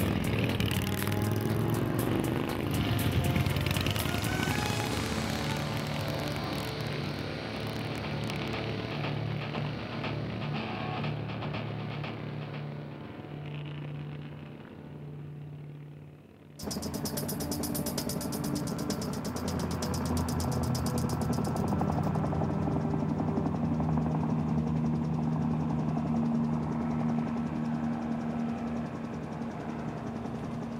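Motorcycle engines passing close by and fading into the distance, with music underneath. About halfway through the sound cuts suddenly to a different steady engine-like sound with a low hum.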